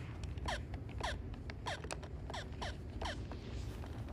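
Handheld video game bleeping: a quick run of short falling electronic tones, two or three a second, mixed with small clicks from the buttons, over the low steady rumble of the ship's cabin.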